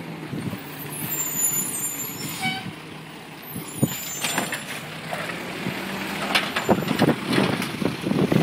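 Automated side-loader garbage truck, engine running steadily as it pulls up, with a short squeal about two and a half seconds in. From about four seconds in come sharp knocks and metal clanks as the hydraulic arm grabs and lifts the wheeled cart.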